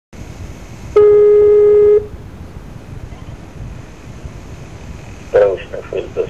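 Telephone-line audio: a steady hiss with a single loud electronic beep held for about a second, starting about a second in. A voice begins on the line near the end.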